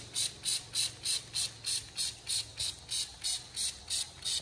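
Trigger spray bottle being pumped quickly, squirting wheel cleaner onto a car wheel: short hissing squirts, about three a second, over a faint low hum.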